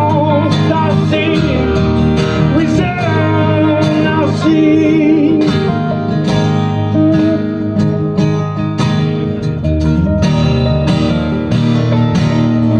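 Live band of acoustic guitar, electric guitar and upright double bass playing together, with wavering sustained melody notes over the strummed chords and bass.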